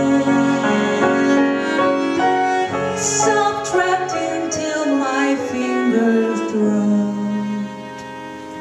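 A woman singing jazz with cello and piano accompaniment, the cello holding long bowed notes under the voice. It drops quieter shortly before the end.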